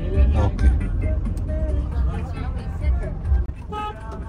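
Low road rumble inside a moving car, with music and indistinct voices over it.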